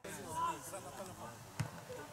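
Players' voices calling out on an outdoor football pitch, with a single sharp thud of a football being kicked about one and a half seconds in.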